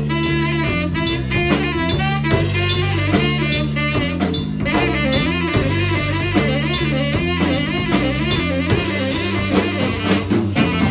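Live improvised jam with electric bass, drum kit and saxophone playing together: a wavering saxophone line over a repeating bass figure and a steady drum groove.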